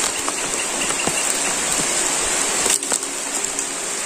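Steady rain falling, with a few soft strikes of a hoe digging into soil.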